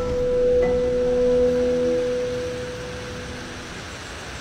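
A single sustained ringing tone, like a struck chime or singing bowl, fading away over about three seconds, over a steady background hiss.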